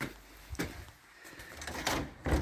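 A few sharp knocks and clicks as someone steps up onto a step, then a louder rattle and click of a wooden door's metal lever handle being tried near the end.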